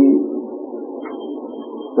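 Steady background noise of a recorded lecture room in a pause between words: a low, even hum with a faint, thin high whine on and off.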